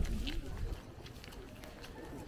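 Footsteps on a stone-paved street, a string of short irregular taps over a low outdoor rumble, with a man's voice speaking French briefly at the start.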